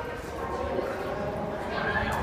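Passers-by talking and walking in a concrete pedestrian tunnel, their voices and footsteps mixed together.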